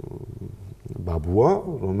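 A man speaking in a studio interview. His voice opens with a low, creaky, drawn-out hesitation sound, then words resume about a second in.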